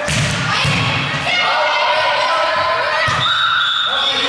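Volleyball rally: a sharp smack of the ball being hit at the net right at the start, then dull thuds of the ball and feet on the gym floor, under continual shouts and calls of the players.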